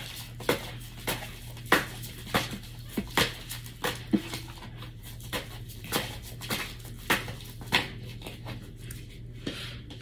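Tarot cards being shuffled and handled at a table: irregular light clicks and taps, a few a second, over a steady low hum.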